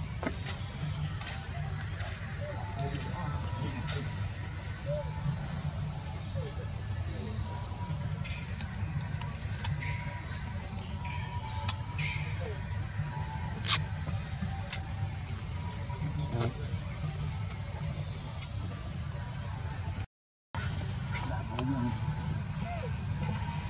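Steady insect chorus in the forest, two constant high-pitched tones over a low rumble, with one sharp click about two-thirds of the way through. The sound cuts out for about half a second near the end.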